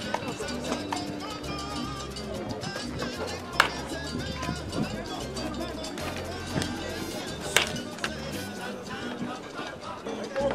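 Background music with a steady beat, cut twice by the sharp crack of a wooden baseball bat hitting pitched balls, about four seconds apart.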